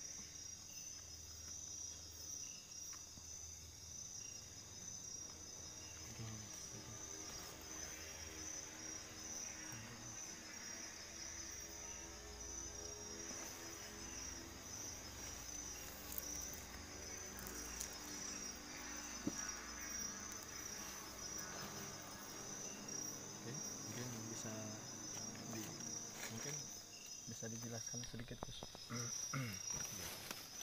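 Crickets chirping in a steady, fast-pulsing trill throughout, with faint low voices underneath in the middle stretch.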